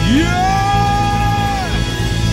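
Live band holding a closing chord, with a high note that slides up, holds for about a second and a half and then drops away near the end.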